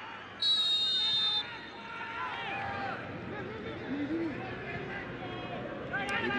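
A referee's whistle blown once for about a second, a steady shrill blast that dips in pitch as it ends. After it come scattered shouts from players over low stadium background noise.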